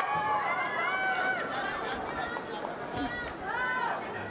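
Boxing spectators shouting and calling out, several raised voices overlapping throughout.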